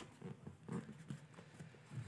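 Faint, irregular light taps and rustles of a hand and pen moving on a paper notebook.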